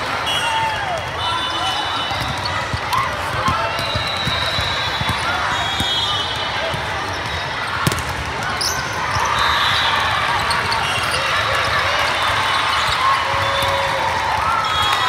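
Busy indoor volleyball hall: many voices from players and spectators over the general din, with short high squeaks scattered throughout. One sharp smack of a volleyball being hit comes about halfway through.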